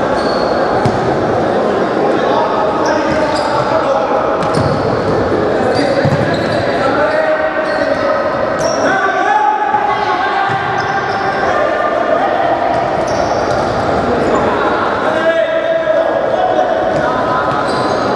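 Futsal being played on an indoor court in a large, echoing hall: the ball thuds when kicked, shoes squeak briefly on the wooden floor, and players call and shout to each other throughout.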